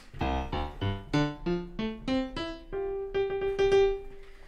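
Sampled grand piano in FL Studio, played live from a MIDI keyboard: a run of single notes climbing in pitch, ending on one note held for about a second and a half.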